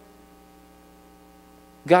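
A steady, faint hum of several sustained tones with no change through the pause. A man's voice comes in right at the end.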